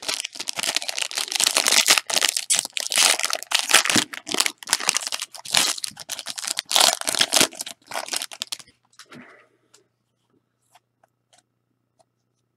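Silver foil wrappers of 2016 Panini Playbook football card packs being torn open and crumpled by hand. A dense run of crinkling and tearing lasts about eight and a half seconds, then gives way to a few faint ticks.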